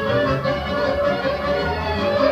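A small folk dance band playing an oro tune: a sustained melody over a pulsing bass line, from a band of clarinet, accordion, synthesizer, guitar and bass. Recorded live on an ordinary cassette recorder.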